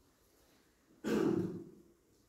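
A person clearing their throat once, about a second in, sharp at the start and fading within about three-quarters of a second.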